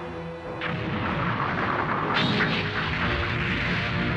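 Background film score with explosion sound effects over it: a first blast just after the start and a bigger one about two seconds in, as debris is thrown from the blast.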